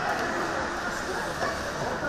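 Ice hockey play on an indoor rink: a steady noise of skates scraping and carving the ice, with indistinct voices in the background.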